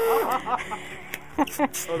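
Electric balloon inflator running with a steady hum that cuts off about a quarter second in, as a long modelling balloon finishes filling. Laughter follows.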